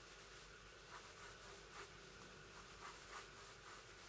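Faint pencil strokes scratching on paper: several short strokes over a steady low hiss.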